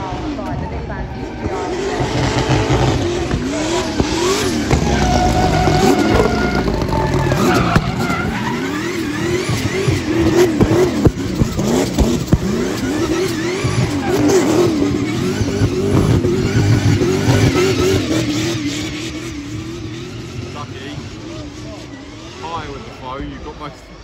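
Drift car's engine revving hard, its pitch rising and falling over and over as the car slides, with tyre squeal and scrubbing. The noise fades over the last few seconds.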